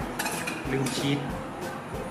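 Small metal spatulas scraping and clinking against little metal pizza pans, in a couple of clattering bursts, the loudest about a second in, over background music.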